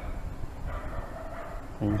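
A faint dog whimper over low background hiss.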